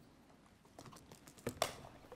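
Papers and a folder being handled on a desk: a run of small clicks and knocks, with two louder knocks near the end.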